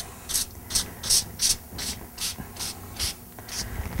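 Oven cleaner squirted from a spray bottle in quick repeated bursts, about three short hisses a second, onto a table saw blade to soften built-up wood pitch.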